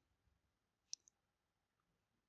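A single computer keyboard key click about a second in, followed closely by a fainter second click, over near silence.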